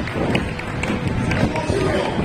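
Stadium public-address sound: music and an announcer's voice carried over the loudspeakers, echoing across the stands, with a general crowd background.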